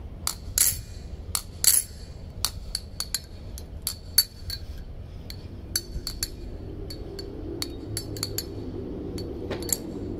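Butterfly knife (balisong) being flipped: a string of sharp metallic clicks and clacks at uneven intervals as the handles swing around the pivots and knock together. A low rumble builds under the clicks in the second half.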